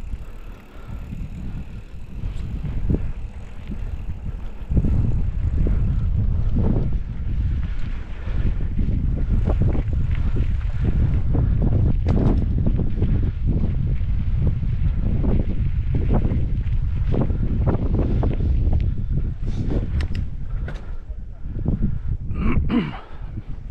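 Wind buffeting the microphone of a camera riding along on a mountain bike over a dirt track, with the tyres running on loose dirt. Frequent short knocks and rattles come from the bike jolting over bumps, thickest in the second half.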